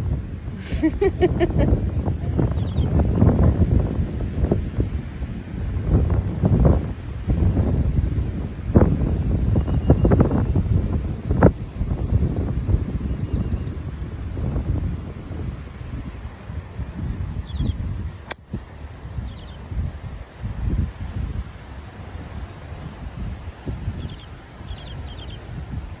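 Wind buffeting the microphone, with small birds chirping. About two-thirds of the way through comes one sharp crack: a driver striking a golf ball off the tee.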